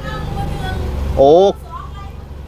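Mostly speech: a woman's voice answering faintly from outside the car, then a man's loud, short "oh" about a second in. Underneath, the stopped car's engine idles with a steady low hum.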